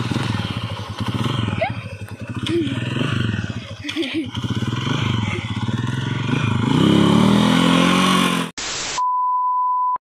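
A small motorcycle engine running close by, revving up over its last two seconds and then cut off abruptly. Then a short burst of static and a steady test-tone beep for about the last second.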